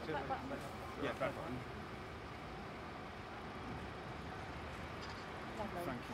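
Steady city-street background noise, with a few words spoken in the first second and again at the very end.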